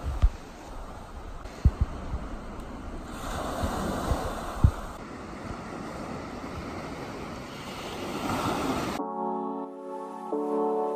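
Small ocean waves washing up on the shore, a steady rushing surf with a louder swell partway through, and a few sharp thumps of wind on the microphone. About nine seconds in it cuts abruptly to soft piano music.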